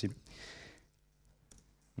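A man's spoken word ends, followed by a soft breath-like hiss. Then near silence, broken by one faint click about one and a half seconds in.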